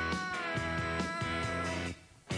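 Indie rock band playing live with drums, bass, guitars and keyboards, a held, slightly wavering high lead note over the beat. The whole band stops abruptly right at the end for a short break.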